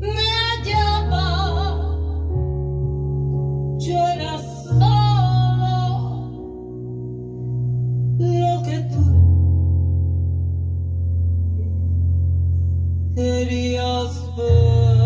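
A woman singing a pop ballad into a microphone in short phrases with a wavering vibrato, over band accompaniment of long held low notes and chords.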